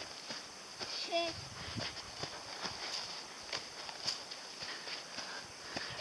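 Footsteps on a sandy dune path: a run of light, irregular steps, with a brief short voice sound about a second in.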